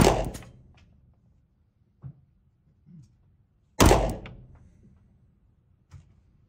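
Beretta 92 FS 9mm pistol firing two shots about four seconds apart, each a sharp bang followed by a reverberant tail off the concrete walls of an indoor range. Faint knocks come in between.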